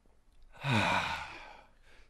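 A man's long sigh: a breathy exhale starting about half a second in, with the voice dropping in pitch, fading away over about a second.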